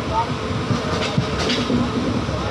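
Train running along the track, heard from aboard: steady rumble of the wheels on the rails with a few knocks, and people's voices over it.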